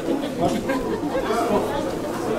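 Speech only: several voices talking at once, overlapping chatter in a large room.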